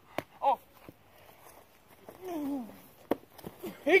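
Brief voice sounds, one short near half a second and a longer one falling in pitch about two seconds in. A few sharp knocks fall between them, the last and clearest about three seconds in.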